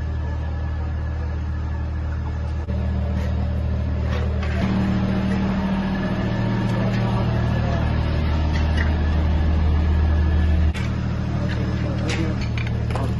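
Steady low engine drone with indistinct voices over it, its pitch and level shifting abruptly where the footage cuts between clips.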